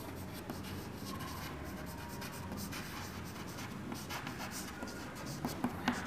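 Chalk writing on a chalkboard: short scratching strokes as letters are written out, with a few sharper taps of the chalk near the end.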